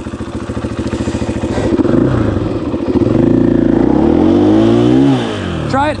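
KTM 500 EXF's single-cylinder four-stroke dirt-bike engine running at low revs, then revved up about two seconds in, held high for a few seconds and falling back near the end.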